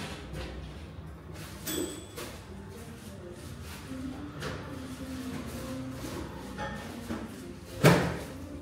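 Pop music playing in a café, with clatter from the counter: a ringing clink about two seconds in and a loud, heavy knock near the end.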